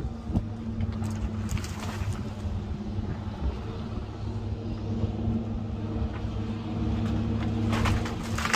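Diesel engines of heavy brush-clearing equipment running steadily, an excavator and a wheel loader with grapples. The drone grows a little louder near the end as the loader drives closer.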